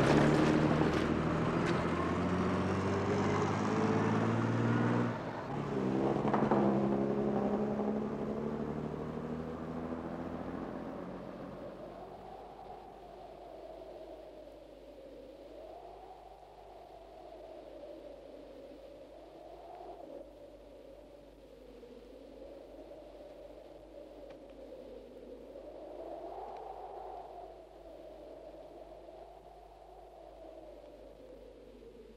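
A bus engine passing close by and pulling away, fading out over about ten seconds. After that, a faint wavering tone rises and falls every few seconds.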